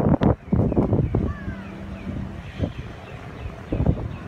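Strong wind buffeting the phone's microphone in heavy rumbling gusts, loudest in about the first second and again near the end, with a lighter rush of wind between.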